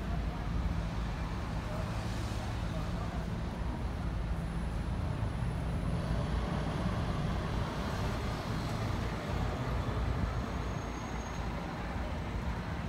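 Road traffic on a busy city street: a steady low rumble of engines and tyres from passing cars and buses.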